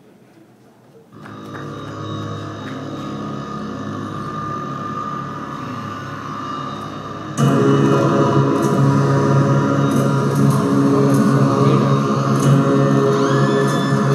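Live band music starting after a brief quiet pause: a quieter opening comes in about a second in, and the full band enters much louder about halfway through.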